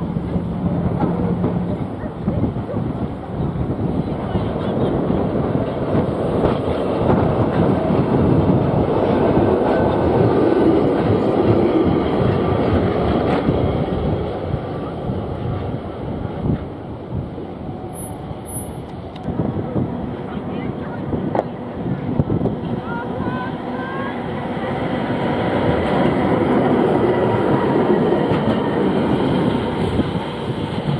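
Heritage electric trams running past on street tramway track: a rumble of wheels on rail that swells twice as trams go by, loudest about ten seconds in and again near the end.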